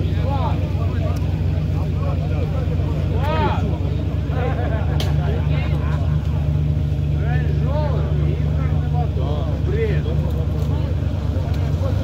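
Off-road 4x4's engine running at a steady speed with an even, unchanging hum, under faint background voices.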